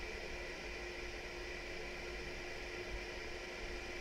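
A steady low hiss with a faint constant hum underneath.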